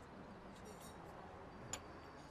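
Quiet background with a few faint light ticks, then a single light clink near the end as a tulip-shaped Turkish tea glass is set down, with a brief ringing note.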